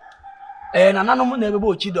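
A rooster crowing once: a long, loud call beginning about three-quarters of a second in, after a fainter held note.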